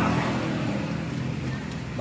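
A steady, low engine hum with a haze of background noise.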